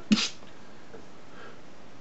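A man's single short, sharp vocal burst about a tenth of a second in: a mock punch noise made with the mouth, like a spat "pow". Then quiet room tone.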